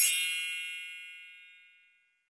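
A single bright, bell-like ding, struck once and ringing out as it fades away over about two seconds.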